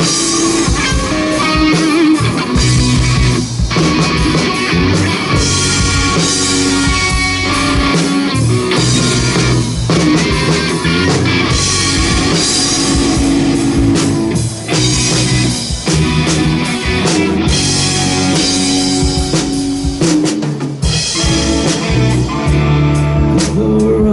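Rock music with guitar and drum kit playing steadily.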